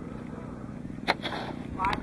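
Wind rumble and handling noise on a phone microphone outdoors, with a single sharp knock about a second in and a brief distant voice near the end.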